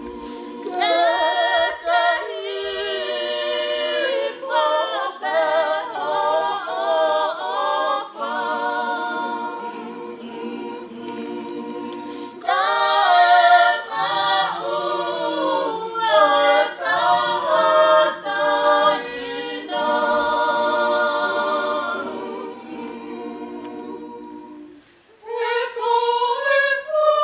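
Tongan congregation singing a hymn unaccompanied in several voice parts, in phrases that swell and pause. The singing dies away near the end, and a single voice begins a new line.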